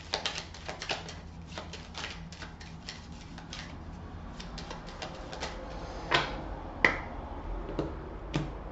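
A tarot deck being shuffled by hand: a quick, uneven run of soft clicks as the cards slip off one another. Near the end come two sharper knocks as the deck meets the wooden table.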